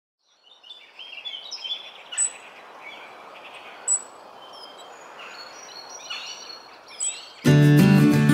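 Birds chirping and calling over a soft background hiss, with a few short, sharp high chirps standing out. Near the end, strummed acoustic guitar music starts abruptly and much louder.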